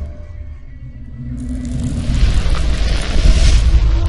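Cinematic outro sound design: a deep booming rumble under music. A rushing noise comes in suddenly about a second and a half in and swells louder toward the end.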